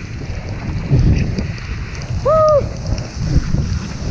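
Wind buffeting the action camera's microphone while skiing fast downhill in a storm: a steady, low rumble. About halfway through comes a single short voiced cry that rises and falls in pitch.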